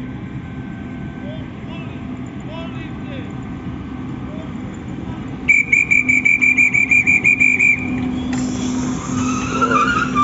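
A railway dispatcher's whistle trilling loudly for about two seconds, about halfway through, as the departure signal, over the steady hum of the waiting electric train. A hiss follows from the train.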